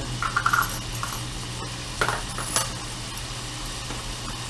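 Metal measuring spoons clinking and a plastic spice-jar cap being opened: a brief rattle early on, then two sharp clicks about two seconds in, over a steady low hum.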